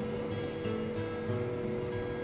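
Quiet instrumental background music: held notes that change every half second or so.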